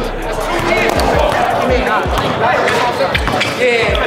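A basketball being dribbled on a hardwood gym floor: a run of low, dull bounces about two a second.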